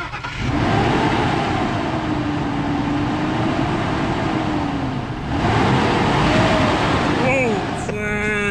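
Ford Expedition V8 engine revved hard twice in gear, each rev climbing and then falling away, while the truck fails to move forward. The automatic transmission is not grabbing, which the owner takes for a failed transmission.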